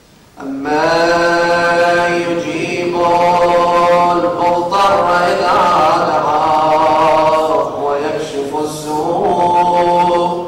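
A man's solo voice chanting a Muharram mourning lament in long, held, wavering notes. It begins about half a second in after a pause, and the notes ease briefly near the end.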